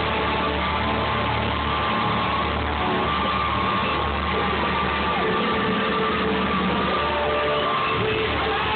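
Live rock band playing at a concert, with crowd voices mixed in, heard loud through a phone's microphone.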